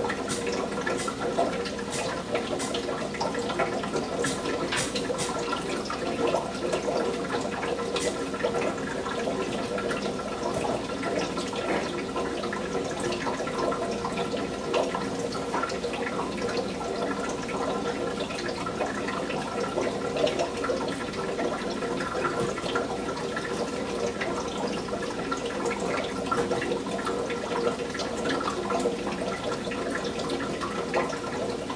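Steady sound of running, bubbling water, with frequent small clicks and splashes throughout.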